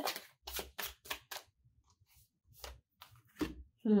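A deck of oracle cards shuffled and handled by hand: a series of short papery snaps and slaps, with a quiet gap of about a second in the middle.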